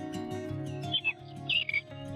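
Soft background music of long held notes, with a few short bird chirps over it about a second in and again around one and a half seconds.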